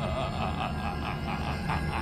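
A man's drawn-out laugh from a film clip, one continuous sustained vocal sound without pauses.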